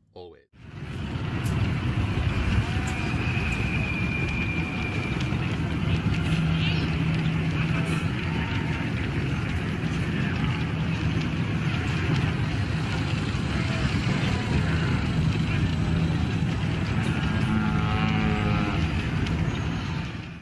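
Sci-fi town ambience sound bed that starts about half a second in: a steady low rumble like vehicles and machinery, with indistinct voices and a few faint short tones over it.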